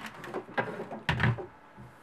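Knit fabric being handled and smoothed flat on a tabletop by hand: two rustling, brushing bursts about a second apart, the second with a soft thud.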